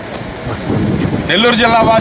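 Wind rumbling on an outdoor microphone for about the first second, then a man speaking.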